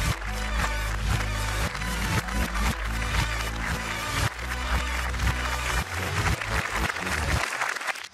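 Upbeat studio entrance music with a steady, rhythmic bass line, over a studio audience applauding; the music cuts off shortly before the end.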